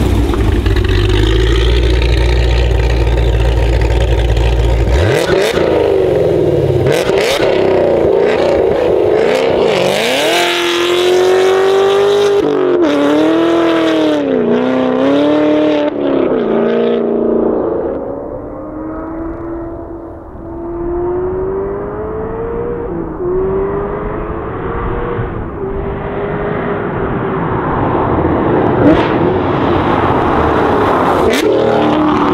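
Hennessey Exorcist's supercharged 6.2-litre V8, with headers and a straight-pipe exhaust, at full throttle as the car passes close and pulls away. Its pitch climbs and drops with each gear shift, then the sound fades into the distance and grows louder again near the end as the car comes back.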